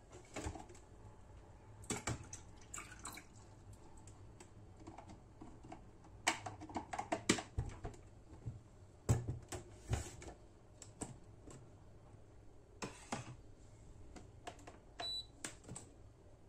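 Plastic clicks and knocks from a HiBREW capsule coffee machine as its lid and capsule holder are handled, coming in scattered groups. Near the end the machine gives one short electronic beep.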